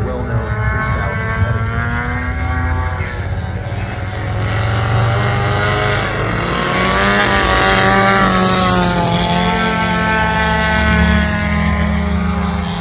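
Engines and propellers of two 110-inch Muscle Bike model biplanes flying together, a steady drone whose pitch rises and falls as they manoeuvre. It is loudest about seven to nine seconds in, as they pass and the pitch drops.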